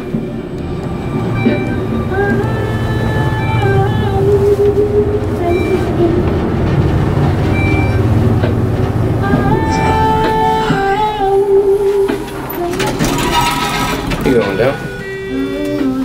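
Background music plays in the elevator cab over the low, steady rumble of the traction elevator car travelling, which fades out about 12 seconds in. A short burst of noise follows near the end.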